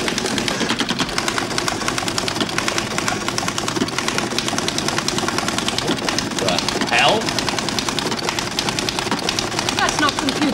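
Computer printer chattering as it prints onto continuous fanfold paper: a steady, fast stream of mechanical clicks.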